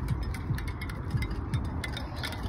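Bicycle rolling along a concrete sidewalk: a steady low rumble of tyres and wind on the handheld phone's microphone, with light clicking and rattling and a few soft bumps about every half second.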